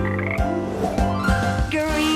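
Cartoon frog croaks over the backing music of a children's song.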